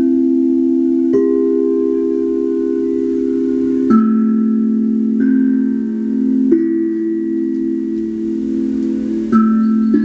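Crystal singing bowls and a steel tongue drum ringing together in long overlapping tones, with a new note struck about five times, each strike shifting the held pitches.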